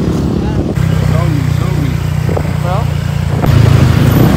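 Steady low engine and road rumble heard while riding on the back of a moving motorcycle in city traffic, growing louder near the end, with faint voices in the background.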